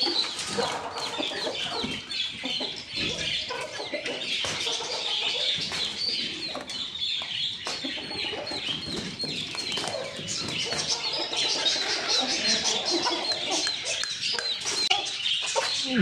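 Chickens clucking over a dense, continuous chorus of short high chirps from many small birds.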